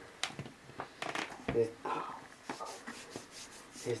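A faint, mumbled voice in short fragments, with a few light clicks and rustles scattered between them.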